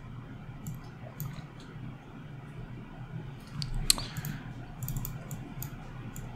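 Scattered faint clicks of a computer mouse and keyboard over a low steady hum, with a sharper click about four seconds in.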